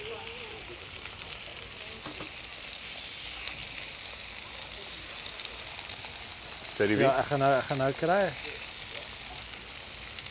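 Steaks and sausages frying on a hot flat-top steel griddle: a steady, high sizzling hiss.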